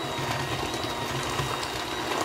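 Electric hand mixer running steadily on low speed, its beaters churning thick cake batter with currants in a stainless steel bowl.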